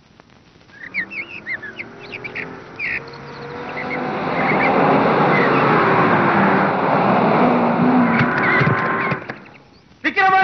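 Birds chirping, then several cars driving up, the engine noise growing louder from about four seconds in and dying away suddenly just before the end.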